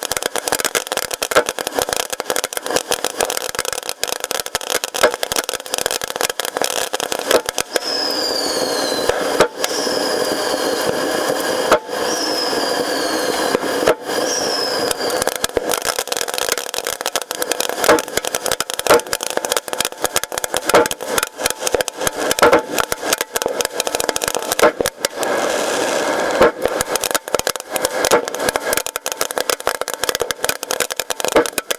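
Consumer fireworks firing at close range from the launch point: a continuous barrage of rapid launch pops and crackles over a steady hiss of spraying sparks. Four falling whistles from whistling rockets sound one after another between about 8 and 15 seconds in.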